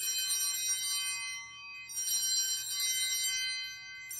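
Altar bells rung at the elevation of the chalice during the consecration: a bright, many-toned ring that fades slowly, then a second ring about two seconds later.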